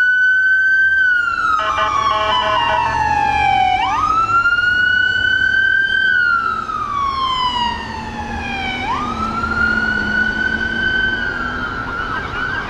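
Electronic siren on a fire rescue truck sounding a slow wail. It sweeps up quickly, then slides slowly down in pitch, about every five seconds. A pulsing horn-like tone briefly overlaps it a couple of seconds in.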